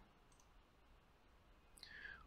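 Near silence with a faint computer mouse click.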